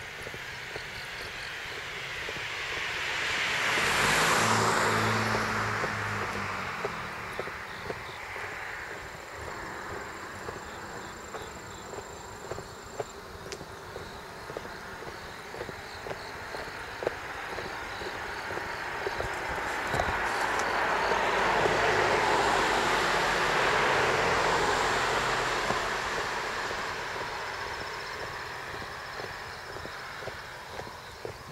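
Two road vehicles pass by, one after the other. The first peaks about four seconds in; the second builds more slowly and peaks a little past twenty seconds. Footsteps tick steadily throughout.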